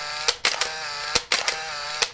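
Camera-shutter click sound effects, a few sharp clicks, over a faint steady pitched tone.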